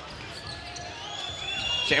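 A basketball being dribbled on a hardwood court during a game, heard faintly under the broadcast. The commentator's voice comes back near the end.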